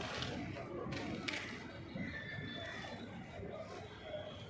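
Railway station platform ambience: a noisy background of distant voices and chatter, with a couple of brief knocks about a second in.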